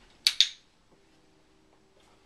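Dog-training box clicker pressed and released: a sharp double click, marking the puppy for looking at the trainer, the signal that a treat is coming.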